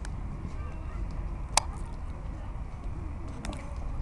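Outdoor ambience at a football pitch: a steady low rumble with faint distant noise, broken by one sharp knock about a second and a half in.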